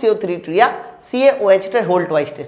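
A man speaking Hindi in a lecturing voice.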